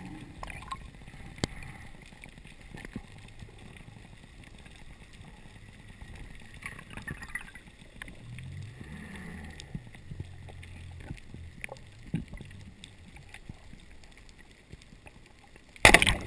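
Underwater sound picked up by a submerged camera: scattered faint clicks and crackles over a low background, with a low hum that swells for a few seconds just past the middle. A sudden loud rush of noise comes right at the end.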